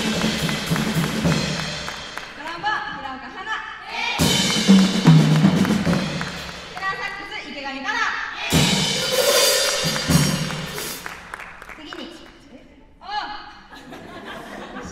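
A jazz big band with a drum kit and cymbals plays three short bursts of about two seconds each: one at the start, one about four seconds in and one about eight and a half seconds in. Short stretches of a voice speaking through a microphone come between them.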